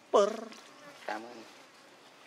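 Macaque giving a short, loud call that falls in pitch about a quarter-second in, followed by a fainter, shorter call about a second in.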